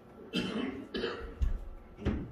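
A man coughing: two short, harsh coughs about half a second apart, then a low thump about a second and a half in, and another cough starting at the very end.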